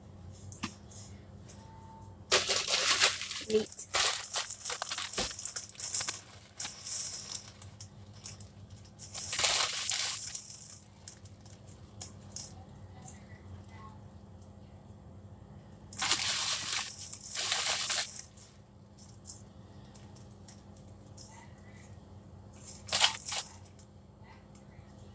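Plastic food packaging crinkling and rustling in four bursts of one to a few seconds, as slices of lunch meat are handled and peeled apart. A steady low hum runs underneath.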